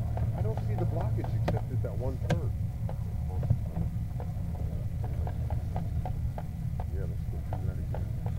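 A steady low mechanical hum throughout, with indistinct, unintelligible voices in the first few seconds and scattered light clicks.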